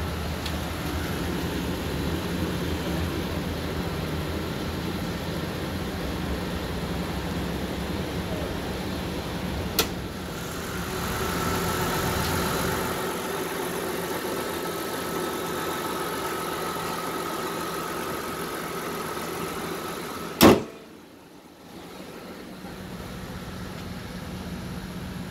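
Mitsubishi Pajero's GDI V6 petrol engine idling steadily, with a sharp click about ten seconds in and a single loud bang near the end, after which the engine sound is much fainter.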